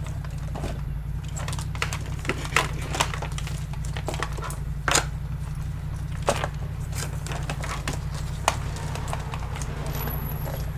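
A steady low hum with irregular sharp clicks and taps over it; the loudest click comes about halfway through.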